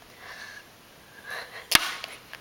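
Two short, breathy sniffs, followed near the end by a single sharp click, the loudest sound here.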